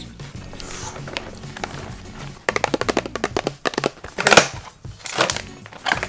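A cardboard snack box being handled and opened: a quick run of dense clicks about halfway through, then two louder ripping rasps, over background music.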